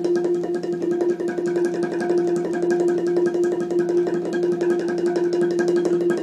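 Ranad ek, the Thai boat-shaped xylophone with wooden bars, played with two padded mallets in a fast, even stream of strokes, about nine or ten a second, with one note ringing on steadily throughout.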